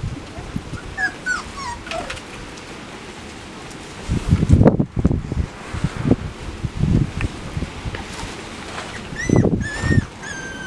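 Chocolate Labrador puppies whimpering and yipping: a few short high whines that slide down in pitch about a second in, and a longer, steadier whine near the end. Low thuds and rumbles come between them, loudest about four to five seconds in.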